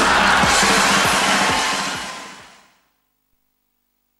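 Live rock band with piano, drum kit and electric guitar ending a song, the final chord and cymbals ringing out with a few last drum hits, then fading away to silence about three seconds in.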